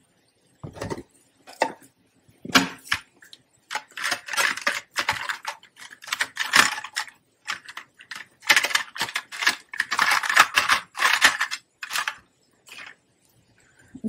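Pens clicking and rattling against each other as they are sorted through and picked up while a thicker-tip pen is found. A few separate clicks come first, then about four seconds in a dense, fast clatter that lasts most of the rest.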